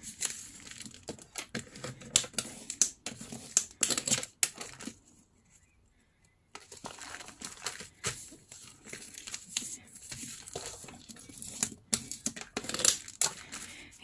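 Newspaper being folded and creased by hand: irregular crinkling and rustling of paper as fingers press along the folds. It stops for about two seconds near the middle, then starts again.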